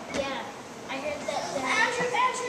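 Young girls' voices, chattering and calling out over one another with high, bending pitch.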